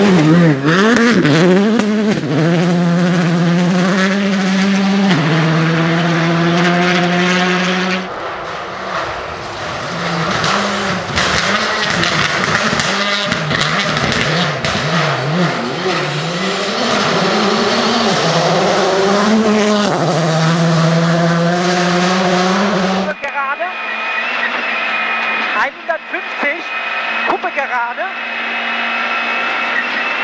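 Škoda Fabia rally car's turbocharged four-cylinder engine driven hard on a gravel stage, its revs climbing and dropping through gear changes, with gravel and tyre noise underneath. About 23 seconds in the sound cuts to the duller engine note heard inside the car's cabin.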